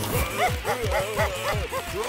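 Cartoon character voices letting out rapid short yelping cries over music with a quick beat of low thumps, about four to five a second.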